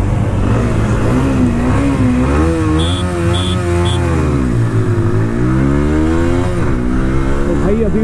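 TVS Apache RTR 160 4V single-cylinder motorcycle engine accelerating hard from a launch, its pitch climbing through each gear and dropping at upshifts about halfway through and again near the end, with wind rush on the microphone. Three short high beeps sound about three seconds in.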